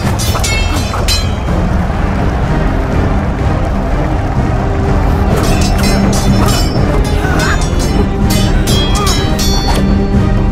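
Dramatic film score music holding a steady low bed, with sharp metallic clashes that ring briefly: swords clanging together, a few just after the start and a quicker run of them from about halfway through.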